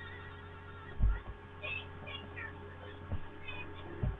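Low thumps of something being handled close to the microphone, the loudest about a second in and a smaller one near three seconds, over a steady electrical hum, with a few faint short high chirps between them.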